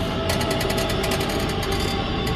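A vehicle engine sound effect running with a fast, even rattle of about ten beats a second.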